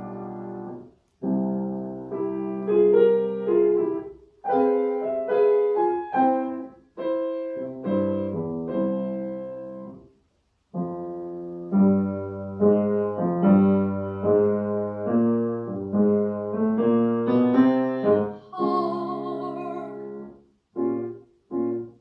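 Piano playing a slow classical passage alone, in phrases of chords and melody notes that fade after each stroke, separated by short pauses, with a full break about ten seconds in.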